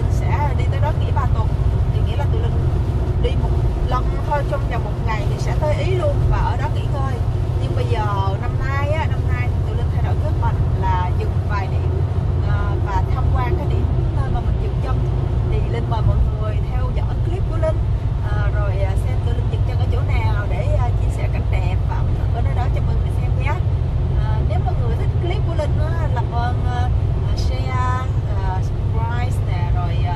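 A woman talking over the steady low rumble of tyre and road noise inside an electric car's cabin at motorway speed, with no engine note under it.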